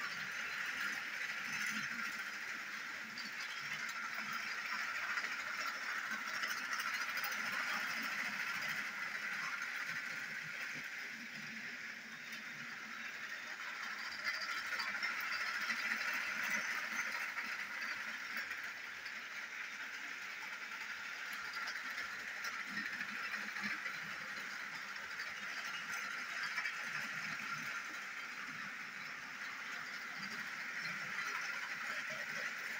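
Battery-powered motorized toy train engines whirring steadily as they pull their cars around a plastic track. The whir swells and fades slowly as the trains move nearer and farther.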